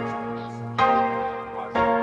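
Instrumental music: sustained keyboard chords, struck about once a second and left ringing out, with a bell-like tone.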